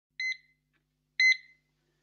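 Electronic beeps from a radio news opening: two short beeps about a second apart, each a quick double pulse, steady in pitch.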